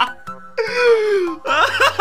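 A man laughing hard. About half a second in comes one long, high laughing wail that falls in pitch, then a rapid run of 'ha-ha' laughter at about five bursts a second near the end.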